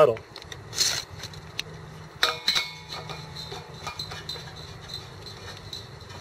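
Light metallic clicks and clinks of a propane hose's brass end fitting being handled and threaded onto the bottle valve: one click about a second in and a few more just past two seconds, over a faint steady hum.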